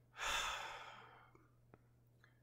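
A person's sigh: one breathy exhale about a second long that starts strong and fades out, followed by a faint click.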